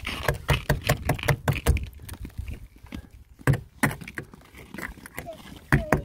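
Irregular run of sharp crunches and knocks on ice, several a second at first, then sparser.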